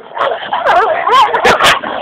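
Small dogs scuffling: a run of short, high yips and whines that rise and fall as they fight.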